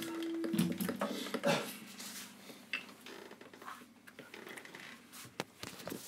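An acoustic guitar's last notes ring on and die away about a second in. Then come scattered soft clicks and knocks of handling noise close to the microphone in a small room.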